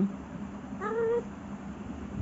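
A long-haired colorpoint cat gives one short meow about a second in, rising slightly in pitch and then holding, as it looks up at its owner asking for attention.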